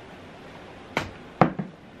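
Two short, sharp knocks about half a second apart: a glass bottle being set down on a hard desk.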